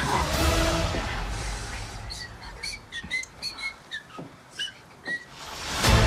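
Film trailer soundtrack: a low background fades away, then a quick run of about a dozen short, high, whistle-like chirps, each with a small slide in pitch, before the sound swells up again at the very end.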